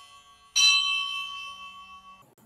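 A bell struck once about half a second in, its ringing tones fading over about a second and a half.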